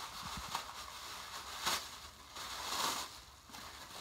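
Tissue-paper wrapping rustling and crinkling as hands pull it out of a cardboard box, with a couple of louder crinkles about halfway through and near the end.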